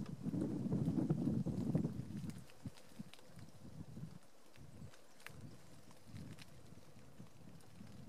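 A low rumble of wind on the microphone for the first two seconds or so, then a quieter stretch with a few faint, scattered footsteps on dry leaf litter.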